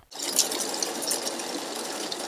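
Electronic banknote counting machine riffling a stack of paper notes through its rollers: a fast, steady rattling flutter.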